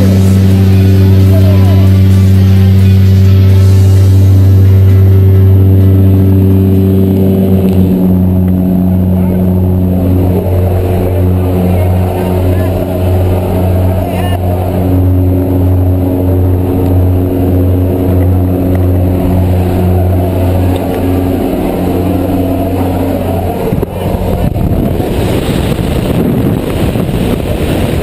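Propeller aircraft engine droning steadily inside the cabin, a low hum with overtones. About eight seconds in the drone drops and starts to waver, and near the end it gives way to a rush of wind.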